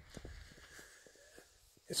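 Faint crunching footsteps in shallow snow: light, irregular clicks for about a second and a half, then near quiet.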